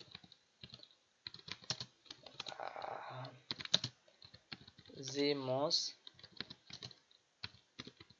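Typing on a computer keyboard: an irregular run of key clicks as words are typed, with a short spoken word about five seconds in.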